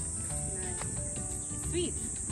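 Steady high-pitched insect chorus droning without a break, with a faint voice near the end.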